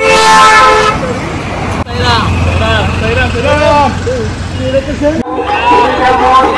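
A vehicle horn toots steadily for about a second, followed by a voice in rising-and-falling phrases over a low hum.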